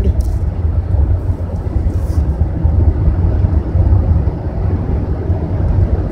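Steady low rumble of a moving car heard from inside its cabin: engine and road noise while driving.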